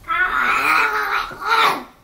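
A drawn-out, wavering vocal cry, not words, lasting almost two seconds with a brief break near the end.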